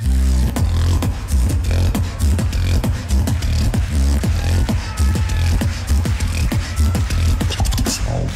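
Beatboxing into a handheld microphone through a loud PA: a deep, sustained sub-bass line with a fast, dense pattern of vocal drum sounds on top, kicking in abruptly at the start.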